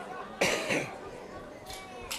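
A person coughing once, about half a second in, followed by a fainter short sound near the end.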